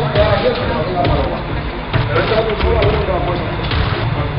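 Indistinct voices talking, too unclear to make out words, over background music.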